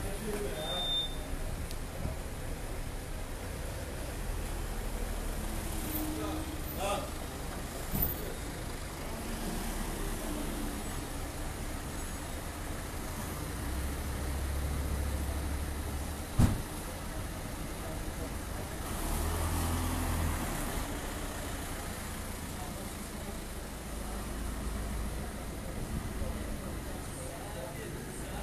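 Cars driving slowly past at low speed, their engines running as a low rumble that swells and fades as each one goes by. A single sharp knock comes about sixteen seconds in.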